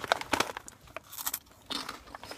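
Plastic snack packets crinkling and rustling as they are handled, a string of short irregular crackles with a denser patch about a second in.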